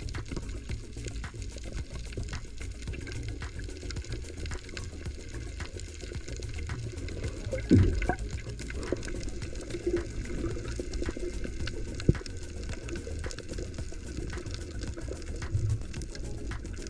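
Underwater sound picked up by a camera swimming over a coral reef: a steady low rumble of moving water with many small sharp crackles throughout, and a louder gush of water about eight seconds in.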